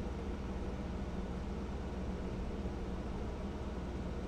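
Steady low hum with a faint even hiss: background room noise, with no other event.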